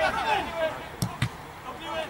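Two sharp thuds of a football being struck, about a fifth of a second apart and about a second in, after shouting from players on the pitch.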